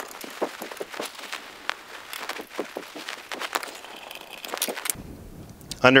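Hand screwdriver backing out the screws of the Growatt SPF5000ES inverter's sheet-metal bottom cover plate: irregular small clicks, ticks and scrapes of the screwdriver tip and loosening screws against the metal.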